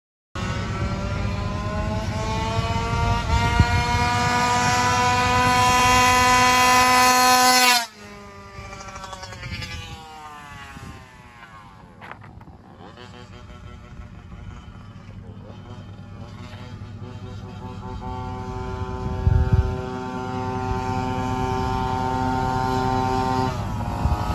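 Goped GSR Sport scooter's GP460 two-stroke engine running at high revs, its pitch slowly climbing as it gets louder for about eight seconds, then dropping away abruptly. It comes back fainter, with a falling pitch near the middle, then holds a steady high note that grows gradually louder through the last ten seconds.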